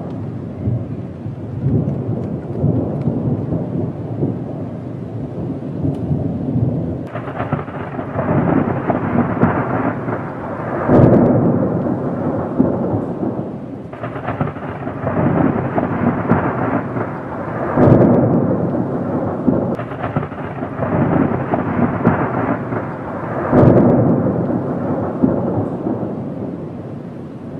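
Thunderstorm: continuous rumbling thunder over steady rain, with three louder peals about eleven, eighteen and twenty-four seconds in.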